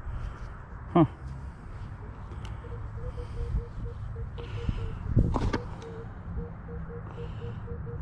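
Minelab Equinox 800 metal detector giving a string of short, low beeps, roughly two a second and briefly broken midway, starting a few seconds in as the coil sweeps over a buried target that reads mostly five or six on its ID scale.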